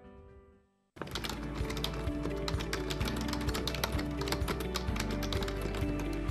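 Sustained piano notes fading out, then a brief silence. About a second in, a music bed starts with rapid, irregular computer-keyboard typing clicks laid over it.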